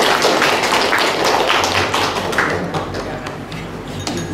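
A roomful of people applauding, many hands clapping together; the clapping slowly thins and fades toward the end.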